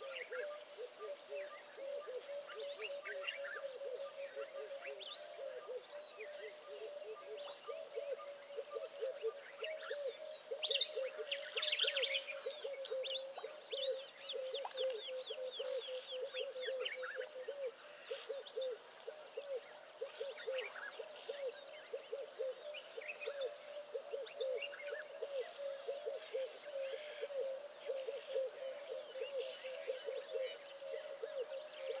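Outdoor wildlife ambience: a steady chorus of repeated short, low hooting calls running throughout, with scattered higher bird calls over it, busiest about a third of the way in, and a high steady insect drone.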